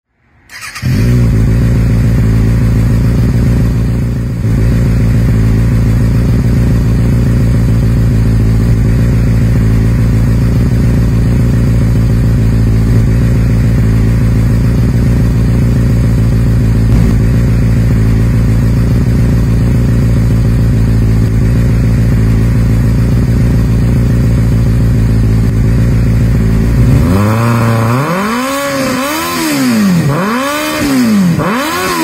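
2024 Kawasaki Ninja ZX-6R's 636 cc inline-four running steadily at idle through a Yoshimura AT2 slip-on exhaust. Near the end it is revved up and back down in a blip or two.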